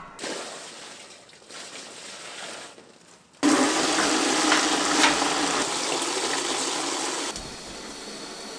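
Kitchen tap running hard into a plastic bucket in a steel sink. The water starts suddenly about three and a half seconds in, runs steadily, and is shut off near the end.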